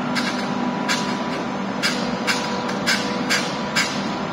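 Steady electrical and mechanical hum of electric trains standing at the platforms, with irregular sharp clicks two or three times a second.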